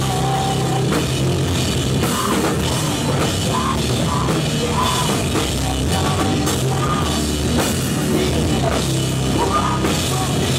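Live rock band playing loudly and steadily: electric guitar, a drum kit and a singer's voice through the PA.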